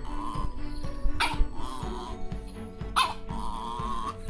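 A small dog gives two short sharp cries, about a second and three seconds in, with wavering whines between them, while it is being brushed. Background music plays underneath.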